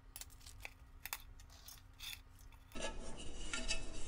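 A few faint, light clicks of a wire cooling rack against an aluminium cake pan as the pan is turned over onto the rack and lifted off the cake.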